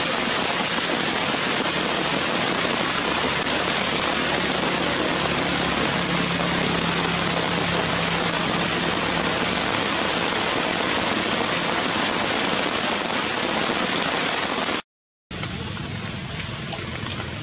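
Heavy rain falling steadily on wet ground, a loud, even hiss. It cuts off abruptly near the end.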